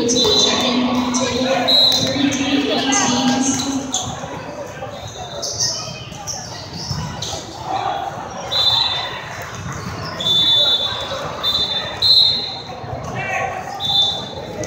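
Indoor volleyball rally in a large, echoing hall: a serve and the ball being struck and passed, sharp impacts, with players' footwork on the court and voices calling out.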